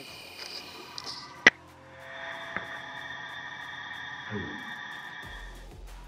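A single sharp shot from a .177 PCP air rifle firing a slug, about one and a half seconds in, with a faint click about a second later. Steady high tones run before the shot, and sustained background music follows.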